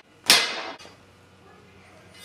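A single sharp metallic clang about a quarter second in, with a short ring that dies away over half a second, as a steel bar is bent into an angle over a wooden block.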